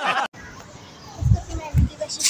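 Voices: a brief bit of speech, then faint children's voices in the background, with two short low rumbles in the second half.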